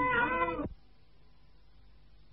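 A high, drawn-out wavering voice that stops abruptly less than a second in, where the recording cuts off. The rest is the faint steady hiss of an old tape recording.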